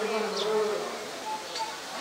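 A flying insect buzzing close by for about a second, its pitch sagging slightly before it fades.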